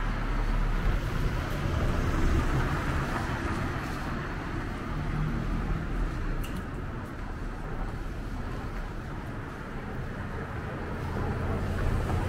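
Street traffic: cars driving along a wet road, their tyres hissing on the wet tarmac, growing louder near the end as a car approaches.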